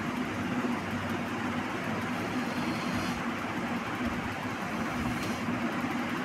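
Steady background hum with a hiss under it. No distinct events stand out.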